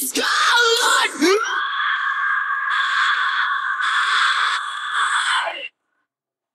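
Isolated female metal vocal with no band behind it: a second or so of short, pitch-sliding vocal sounds, then one long harsh scream held for about four seconds that cuts off abruptly.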